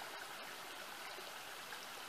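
Small woodland creek flowing: a faint, steady rush of water.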